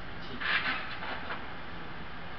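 Daewoo low-floor city bus driving past amid steady street traffic noise, with a short burst of hiss about half a second in.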